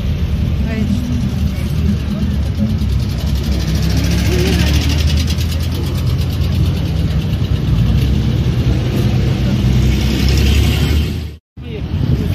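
Engines of vintage Soviet army vehicles, an old truck and GAZ-69 jeeps, running with a steady low rumble as they drive slowly past, with crowd voices over them. The sound drops out for a moment near the end.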